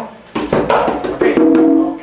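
Timbales played in the pachanga pattern: a few quick, sharp strokes in the first second, then a drum head left ringing with a steady tone.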